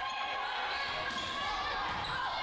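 Volleyball match audio in a gymnasium: steady, echoing hall noise with distant voices.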